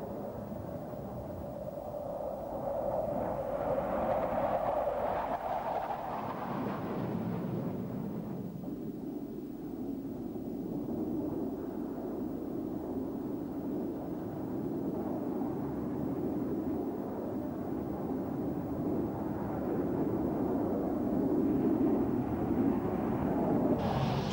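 Jet engine noise from a Panavia Tornado's two turbofans: a steady rumbling rush that swells a few seconds in, eases off, then builds again toward the end as the jet comes in on approach.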